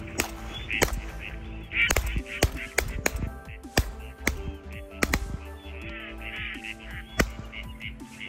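Ducks quacking in repeated runs of raspy calls over background music, with sharp sudden hits scattered through it.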